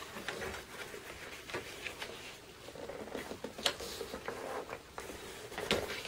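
Green cardstock being handled and folded on a paper trimmer's board: faint rustling of paper with a few scattered light clicks and taps.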